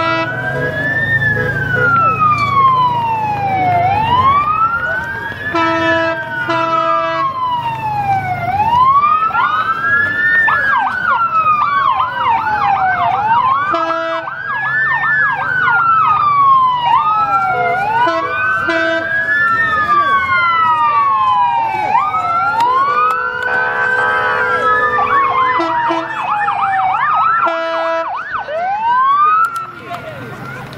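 Emergency-vehicle sirens in a slow wail, the pitch rising and falling about every four to five seconds, breaking at times into a fast yelp, with more than one siren overlapping. Short vehicle horn blasts sound at intervals throughout.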